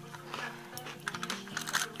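Background music, with a run of short crinkling clicks in the second half as the foil seal is peeled off a glass jar of Lotus biscuit spread.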